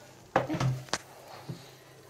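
A metal baking tray knocking as it is handled and set down on a glass-ceramic cooktop: a few sharp clunks in the first second, then one more about a second and a half in.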